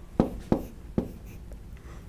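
Stylus pen tapping on an interactive whiteboard screen while numbers are written: three sharp taps within about the first second.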